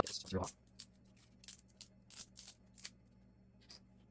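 Fingers picking leftover support material off the back of a small 3D-printed plastic plate: a series of faint, short plastic crackles and scratches at uneven spacing, about seven over three seconds.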